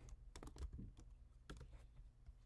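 Faint keystrokes on a computer keyboard: a few separate taps, as when typing a short word into a search box.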